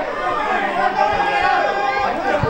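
Several spectators' voices talking and calling out over one another, a steady babble of chatter.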